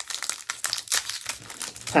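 Foil wrapper of a Topps Series 1 baseball card pack crinkling and crackling as it is peeled and torn open by hand, a quick irregular run of small crackles.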